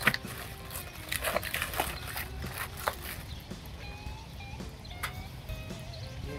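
Pecan wood splits being set into the firebox of an offset smoker: a string of irregular wooden knocks and clunks as the splits are placed and shifted against each other and the firebox.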